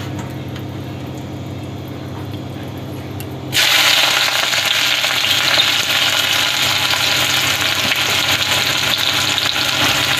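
Sliced red onions going into hot oil in a kadai: a loud, steady frying sizzle starts suddenly about three and a half seconds in. Before that, only a low steady hum and a faint sizzle from spices in the oil.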